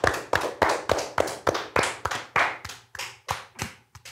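Two people clapping their hands, about four or five claps a second. The claps grow quieter and sparser toward the end as one of them stops.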